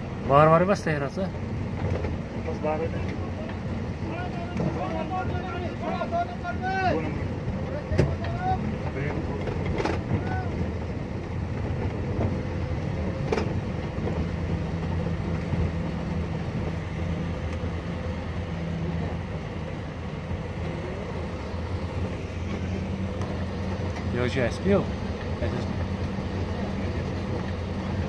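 A vehicle engine running steadily with a low hum, and people's voices calling out briefly near the start, a few seconds in, and again near the end.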